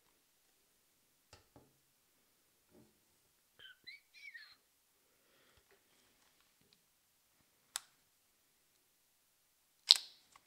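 Handling noises of a Canon EOS 700D DSLR as its zoom lens is taken off the body: soft ticks and rubs, brief squeaks a few seconds in, a sharp click near eight seconds and a louder sharp click at the very end.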